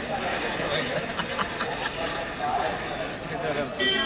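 Several people talking over one another, no single voice standing out, with a brief high-pitched tone near the end.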